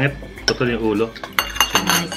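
Chopsticks and a spoon clinking against ceramic bowls at a dinner table, a quick cluster of light clinks in the second half.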